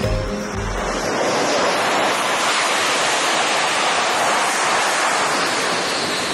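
F/A-18 Super Hornet's twin jet engines at full power during a catapult launch: a steady, even roar.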